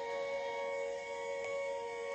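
OP-1 synthesizer holding a sustained chord, several notes ringing steadily as a drone. It is the kind of pad she layers underneath as warm texture.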